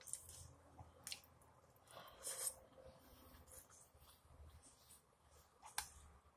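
Quiet, close-miked chewing and wet mouth sounds of someone eating lamb birria, in a few short, sharp bursts spread out, the loudest a little over two seconds in and near the end.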